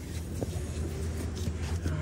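A steady low rumble in the background, with faint handling noises and a small click about half a second in as a felt-covered box lid is lifted off its foam insert.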